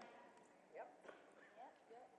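Near silence: room tone, with a few faint, short rising sounds.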